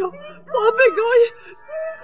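A high cartoon voice making wordless, wavering cries, one phrase a little after the start and a shorter one near the end.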